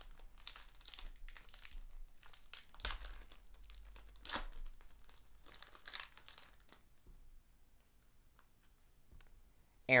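Foil wrapper of a trading-card pack being torn open and crinkled by hand: a run of soft rustles with a few sharper crackles, stopping about seven seconds in.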